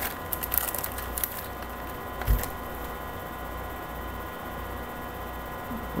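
Trading cards and a foil card pack being handled by hand: a run of small clicks and crinkles in the first second and a half and a soft thump a little after two seconds. Under it a steady electrical hum carries on alone for the second half.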